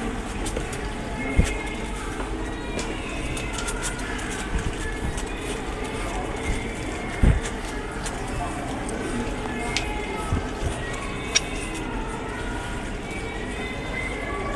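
Background music with indistinct voices over a steady murmur of room noise, broken by a few low thumps, the loudest about a second and a half in and again around seven seconds.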